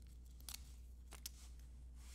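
Faint crisp snips and rustles of a paper order slip being torn off a strip of printed receipts, a few short sharp sounds spread over the two seconds, over a low steady hum.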